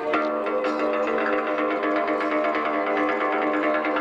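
Background music led by a plucked-string instrument, played in quick, even picked notes over sustained chords.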